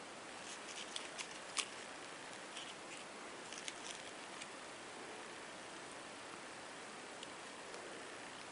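Faint small clicks and rustles of wire flower stems and beads being twisted together by hand, most of them in the first half, over a steady hiss.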